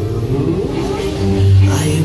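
Soundtrack of a nighttime water-and-light show playing over outdoor loudspeakers: sustained low musical tones with a voice over them.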